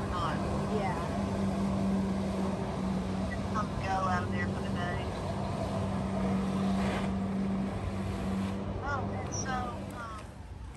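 Steady engine drone from the personal watercraft that powers a flyboard rider's water jets on the lake, with voices heard over it a few times.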